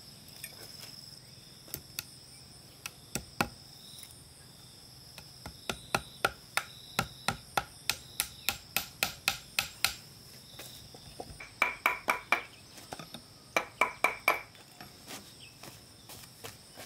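Hammer blows on wood as nails are driven through a log into its round slab base: a few scattered strikes, then a steady run of about three blows a second, then two quick flurries with a ringing note near the end. A steady high chirring of insects runs behind.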